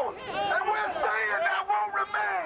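Speech only: a man's raised voice amplified through a handheld megaphone.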